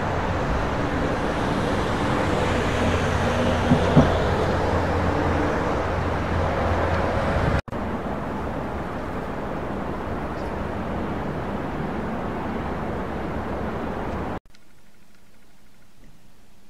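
Steady rumble of road traffic on the motorway viaducts, with a brief knock about four seconds in. It cuts abruptly to another stretch of steady traffic noise about halfway through, then drops to a faint hiss near the end.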